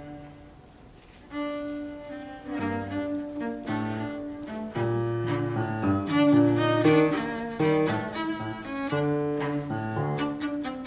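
Cello and piano playing together: a soft, held opening for about a second, then the music grows louder, with sustained bowed cello notes over piano chords.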